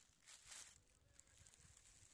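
Near silence: faint outdoor background noise only.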